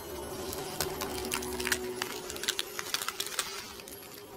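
Animated-intro sound effects: a scatter of light, irregular clicks and ticks over a faint low rumble and a soft held tone.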